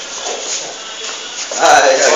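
Indistinct talking over rustling handling noise, with a louder voice coming in about one and a half seconds in.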